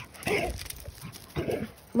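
A playful dog snorting and grunting in two short bursts about a second apart.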